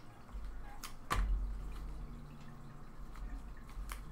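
A card pack being handled and set down on a stainless-steel digital pocket scale: one sharp tap about a second in, followed by a low handling rumble and a couple of faint clicks.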